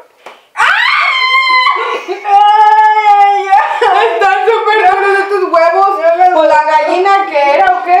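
Young women shrieking: a sudden high cry about half a second in, then a long held yell, followed by excited shouting and laughing voices, as an egg is cracked against one's head in a game of egg roulette.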